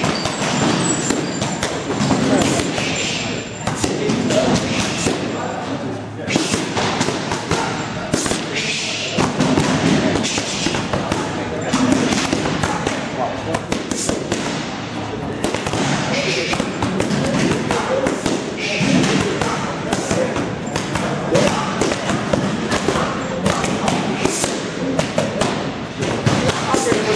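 Boxing gloves striking focus mitts again and again, each punch a short smack, over a background of gym voices.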